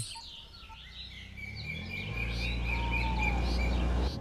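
Birds chirping and calling, with the low rumble of an approaching SUV growing louder from about halfway in.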